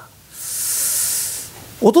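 One long hissing breath from the storyteller, lasting about a second, rising and falling away smoothly.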